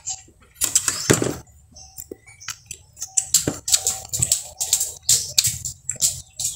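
Close-up eating sounds: someone chewing squid and rice with wet lip-smacks, a fast irregular run of short clicks and smacks.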